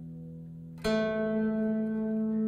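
Bavarian zither played freely and slowly: the previous note fades away, then about a second in a new note is plucked sharply, clearly louder, and rings on.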